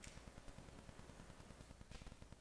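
Near silence: room tone with a faint steady low hum, and a faint click at the start and another near the end.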